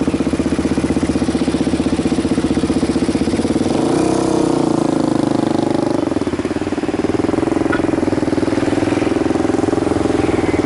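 Motorcycle engine idling close by with a steady pulsing beat, its pitch rising briefly and settling about four seconds in.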